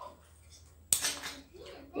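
A single sharp click about a second in, like a small hard object being put down on the table, over faint room noise.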